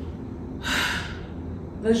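A woman's sharp in-breath, about half a second long, in a pause mid-sentence, with speech picking up again near the end.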